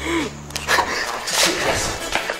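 Short, loud, wordless voice sounds, shouts or cries, from people in a physical struggle.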